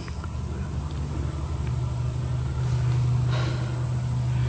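A steady, high-pitched drone of insects in the field and woods, over a louder low rumble that swells slightly after the first second.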